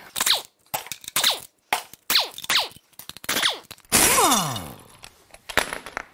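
Pneumatic impact wrench zipping out the bolts of the belt tensioner and idler pulley, run in about six short bursts. Each burst falls in pitch as the tool spins down, and the longest, about four seconds in, winds down over about a second.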